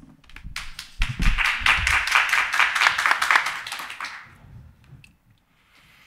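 Audience applauding: many hands clapping together, starting about half a second in and dying away around four seconds in.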